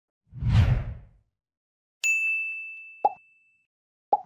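Animated subscribe-screen sound effects: a deep whoosh with a low boom, then a bright bell-like ding about two seconds in that rings out for over a second, and a short pop near the end.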